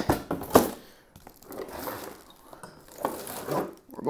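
Rustling and crinkling as a bundled wiring harness and its packaging are handled and pulled from the box, with a few sharp clicks in the first half second.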